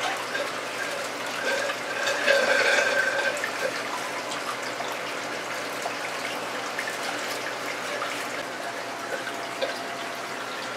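Water sloshing and pouring in a plastic bucket as bags of water holding clownfish are emptied into it by hand, with a louder pour about two seconds in.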